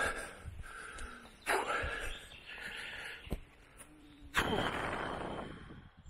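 A hiker's heavy breathing after an uphill walk: two long, breathy exhales, one about a second and a half in and one about four and a half seconds in, with a faint click between them.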